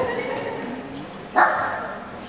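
A small dog barks once, about one and a half seconds in, the bark ringing on briefly.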